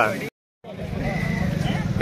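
A man's voice breaks off and a short gap of dead silence follows. Then a motor vehicle's engine runs in the background as a steady low rumble.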